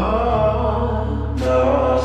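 Slowed-down, reverb-heavy pop song: a drawn-out, chant-like vocal over a steady low bass note, with one sharp drum hit about one and a half seconds in.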